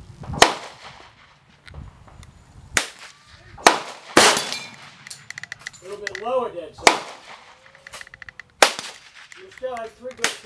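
Six single pistol shots fired at steel silhouette targets, spaced unevenly one to two seconds apart, each with a short echo. A voice murmurs briefly between the later shots.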